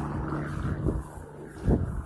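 A steady low engine hum, as of a vehicle idling close by, with a few dull low thumps from the phone being handled while walking, the loudest about three-quarters of the way through.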